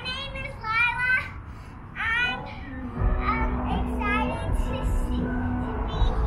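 A young girl singing in a high voice in short phrases. About three seconds in, music with a heavy bass starts underneath, and the singing carries on over it.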